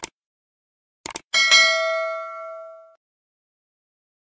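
Mouse-click sound effects, one at the start and a quick double click about a second in, then a bright bell ding that rings out and fades over about a second and a half: the click-and-bell sound effect of a subscribe-button animation.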